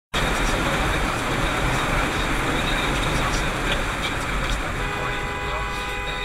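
Steady road noise inside a moving car's cabin: tyre and engine rumble with wind, easing slightly near the end.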